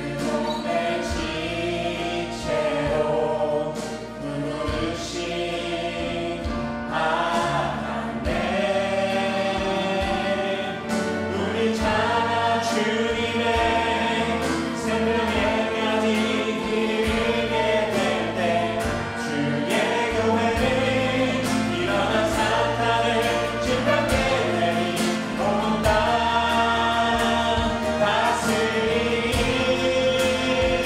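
A worship team of women and men singing a Korean praise song together with instrumental backing. The singing grows fuller and a little louder about seven seconds in.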